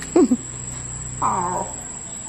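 Two high-pitched voice-like calls: a quick one sliding steeply down in pitch at the start, and a longer wavering one about a second in that also falls at its end.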